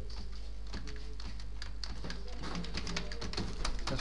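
Computer keyboard typing, an irregular run of quick key clicks, over a steady low electrical hum.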